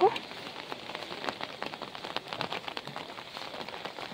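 Rain falling on an umbrella, the drops ticking irregularly close to the microphone, over the faint hiss of small waves washing up the sand.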